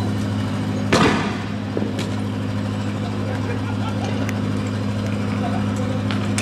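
Armored police truck's engine running steadily, with one loud, sharp bang about a second in.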